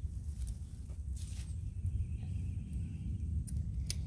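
Plant stems being trimmed back by hand, with a few short sharp clicks or snaps and some rustling, over a steady low rumble.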